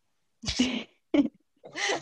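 A woman laughing in two short breathy bursts, the second briefer, with her voice picking up again near the end.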